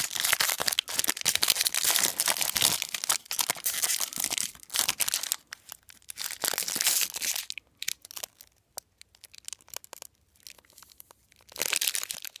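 Foil trading-card pack wrapper crinkling and crackling as it is handled and unfolded. The crinkling is dense for the first seven seconds or so, thins to scattered single crackles, then picks up again briefly near the end.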